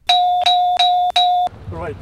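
Game-show bell sound effect struck four times in quick succession, about three dings a second, each a clear two-pitch ding that stops about a second and a half in. It marks "6" as the correct quiz answer.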